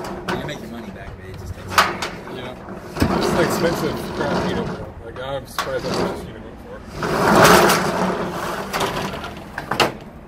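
Corrugated steel roll-up storage-unit door being raised, a long rattling rush in the last few seconds, after a few sharp clicks earlier on.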